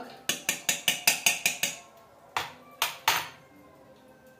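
A metal spoon beating egg in a stainless steel bowl: quick clinks of spoon on bowl, about five a second, for the first two seconds, then three separate clinks.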